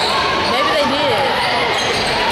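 Basketball game sounds in a gym: a ball bouncing on the hardwood court, with voices calling out.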